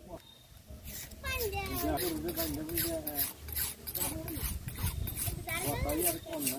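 A broad butcher's blade stroked back and forth on a wetted sharpening stone. A rasping stroke comes about three times a second, starting about a second in, with voices in the background.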